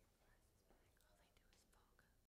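Near silence with faint, indistinct voices, too low to make out words.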